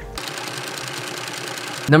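A steady rattling hiss lasting about a second and a half, with little bass, used as a transition sound effect at an edit between segments.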